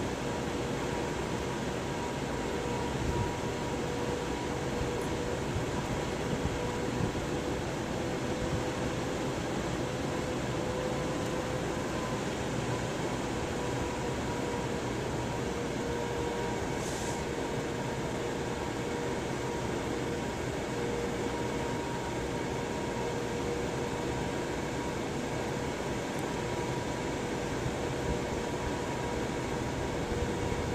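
Electric fan running steadily, with a constant rush of air and a steady hum.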